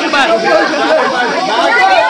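A group of young people talking and calling out over one another: lively overlapping chatter of guesses.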